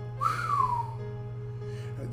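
A single short whistle that rises briefly and then slides down in pitch, lasting under a second, over a steady low background hum.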